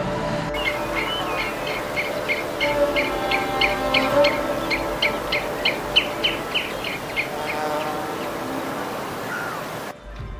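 A small bird chirping over and over, about three short high chirps a second, starting about half a second in and stopping near the end, over faint background music.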